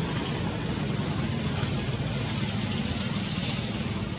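Steady outdoor background noise: a low rumble with a high hiss over it, without any distinct event.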